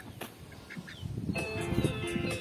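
A few faint, short peeps from poultry called to feed. A little over a second in, background music with plucked strings starts and becomes the louder sound.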